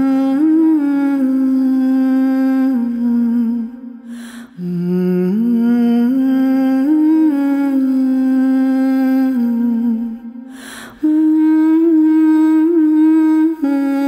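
A woman's voice humming a slow, wordless melody in three long held phrases, with a short breath between them about four and ten seconds in.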